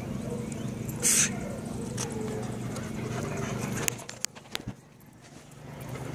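Dogs moving about close by on concrete: a short breathy snort about a second in, then a handful of sharp clicks of claws on concrete, over a steady low hum that stops about four seconds in.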